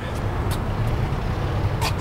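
Steady low hum of a motor vehicle engine running, with a few brief clicks.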